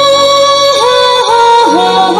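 Nepali folk song played over a loudspeaker: a high singing voice holds one long note, then breaks into quick downward dips in pitch, over a musical backing.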